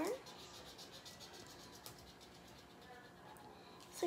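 Felt-tip marker scratching on paper in quick back-and-forth colouring strokes, faint, busiest in the first second or so and then more scattered.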